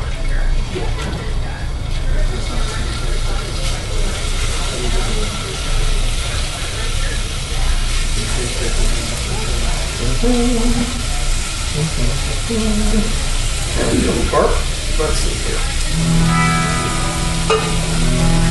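Strips of raw beef frying in a hot skillet on a gas burner, a steady sizzling hiss. Plucked guitar music comes in near the end.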